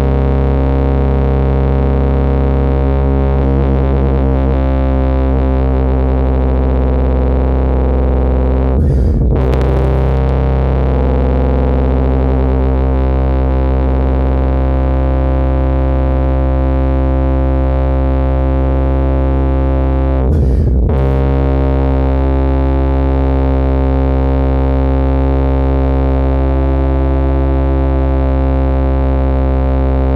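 Tuba playing long, low, sustained notes, each held for many seconds, with two short gaps about nine and twenty seconds in.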